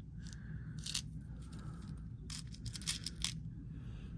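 Small Czech glass bell-flower beads clicking against each other and against a plastic bead tray as it is handled: a couple of light clicks in the first second, then a quicker run of clicks between about two and three and a half seconds in.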